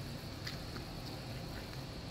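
Quiet room tone: a steady low hum with a faint high whine, and one small click about half a second in.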